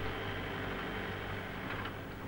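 A steady low mechanical hum with hiss, even throughout, with no distinct blows or rhythm.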